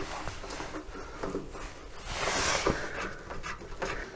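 Faint handling noise as hands work among wires and conduit fittings at the bottom of a metal electrical cabinet: light rustling and a few small knocks, with a soft hiss swelling about halfway through.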